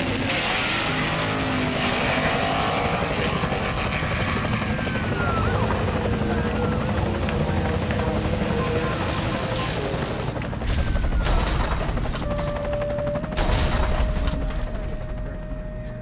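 Background music layered with dubbed vehicle-chase sound effects, with sharp bangs about eleven and thirteen and a half seconds in.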